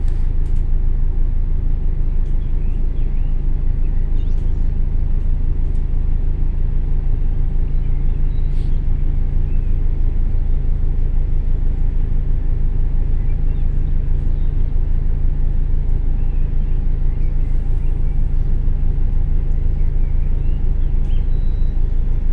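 Volvo B10BLE 6x2 city bus's diesel engine and ZF automatic gearbox running at a steady, even pace while the bus is under way, heard from inside the passenger area as a continuous low rumble. A few faint light rattles come through now and then.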